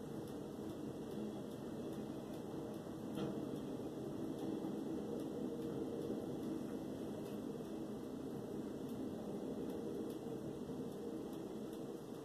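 Steady low whir of an electric fan running in the room.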